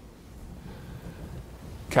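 Quiet room tone of a lecture hall with a faint low hum during a pause in the talk; a man's speech resumes at the very end.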